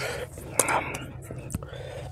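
A man's breathy exhalations close to the microphone, with a sharper puff of breath about half a second in and a small click near the end.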